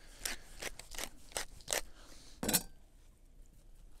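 Hand pepper mill grinding peppercorns: a run of crisp, crunchy clicks, about four a second, that ends with its loudest click about two and a half seconds in.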